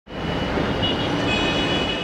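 Steady city road-traffic noise, fading in at the start.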